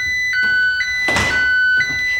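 Home security alarm sounding after a glass-break detector tripped: a steady two-tone beep that switches between a lower and a higher pitch about every half second. About a second in there is a brief noisy thump or rustle.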